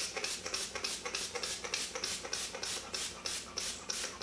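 Finger-pump spray bottle of Stiffen Quick fabric stiffener spritzing over and over onto ribbon bow parts, a quick, even run of short hisses at about four or five sprays a second.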